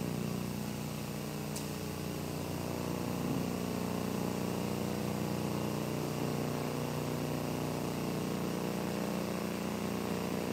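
Steady low mechanical hum of a large room's background, like air handling, with no clear single events.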